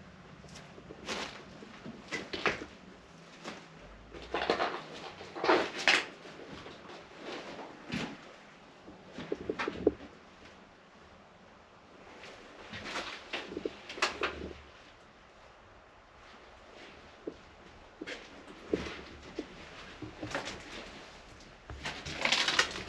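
Footsteps crunching over debris on a wrecked floor, in irregular bursts with a few sharp knocks.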